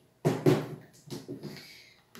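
Plastic Tupperware containers knocking and clattering as they are set down and handled: two sharp knocks close together near the start, then a few softer ones.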